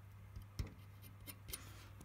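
A few faint, light clicks as a fingertip handles a hot-glued speaker-wire connection on the back of a stereo amplifier, over a steady low hum.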